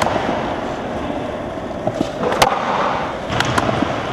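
Skateboard wheels rolling on smooth concrete through a nose manual, with a sharp pop of the board about two and a half seconds in as the nollie flip out is popped, then two lighter clacks of the board landing about a second later.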